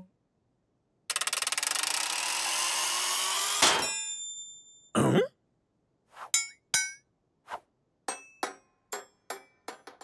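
Cartoon kitchen blender whirring for about two and a half seconds, rising slightly in pitch, then a clunk as it breaks down and winds down, followed by a short sputter. Then a run of small metallic pings and clicks, coming closer together, as a loose screw from the broken blender bounces away.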